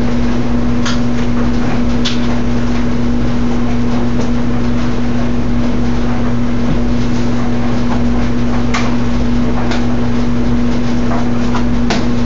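Top-loading washing machine running with its lid open, most likely filling with water for the wash: a steady rush with a constant hum underneath, and a few light clicks.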